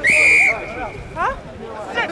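Referee's whistle blown once: a short, loud, steady blast of about half a second that trails off faintly, stopping play, with spectators' voices behind it.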